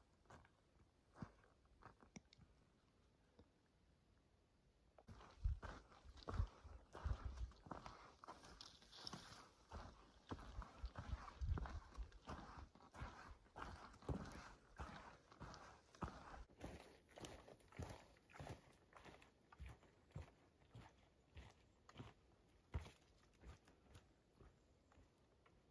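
Hiker's footsteps on a dirt forest trail: a few faint taps at first, then from about five seconds in a steady run of footfalls at walking pace.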